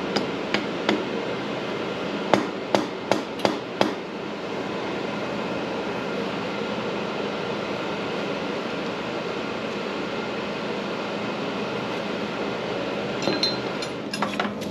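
Sharp metallic knocks from the freshly cast bronze tree and steel tongs as it is handled over the mold sand. There are three lighter knocks at the start, then five loud ones in quick succession about two to four seconds in, over steady background noise.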